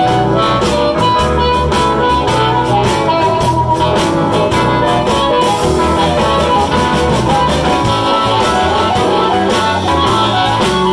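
Live blues on amplified harmonica, cupped against a microphone, and electric guitar, playing continuously with a steady beat.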